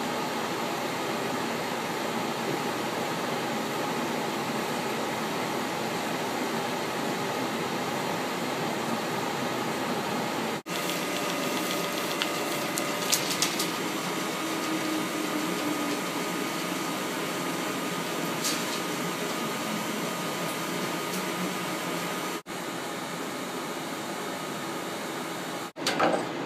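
Steady whir and hiss of running machinery in a 35mm film projection booth, from the film platters and the booth's ventilation, with a few faint clicks about halfway through.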